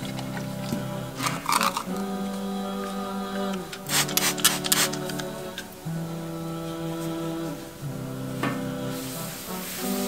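Vocals-only background nasheed: wordless voices holding long chords that change every couple of seconds. Over it, a cloth rubs on a metal tabletop, with a few sharp clicks and knocks about a second and a half in and again about four seconds in.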